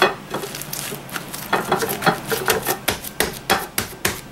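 Plastic cling wrap over banana-leaf wrapping crinkling and crackling as hands press and smooth the wrapped package. It makes a quick, irregular run of sharp ticks that grows denser about halfway through.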